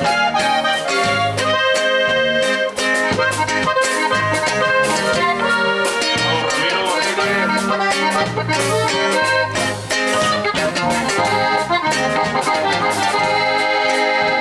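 Live norteño band playing an instrumental break between verses: accordion carrying the lead melody over strummed guitar and electric bass, at a steady beat.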